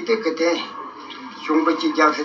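Speech only: an elderly man talking in Tibetan, with a short pause near the middle.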